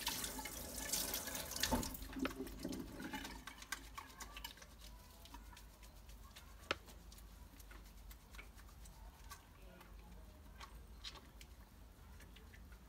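Hands being washed under a running tap, water splashing into a stainless steel sink. The flow is loudest for the first few seconds, then gives way to softer splashing and rubbing, with a sharp click about seven seconds in.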